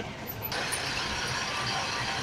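Steady engine and road noise inside a minibus cabin: a low rumble with a hiss that grows about half a second in.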